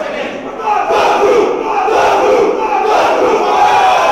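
A football team huddled in a dressing room, shouting together as one loud group cry of many men's voices that swells about a second in.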